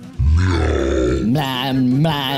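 A man's voice imitating a cat: a deep, drawn-out grunt like a burp, then a low, held 'meow' starting about a second and a half in.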